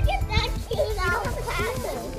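A young child's high-pitched voice, calling out and babbling.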